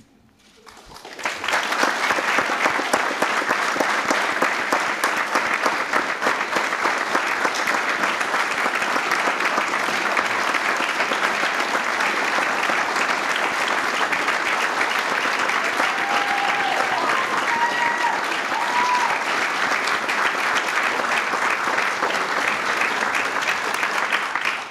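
Audience applauding, starting about a second in, holding steady for some twenty seconds and fading out near the end.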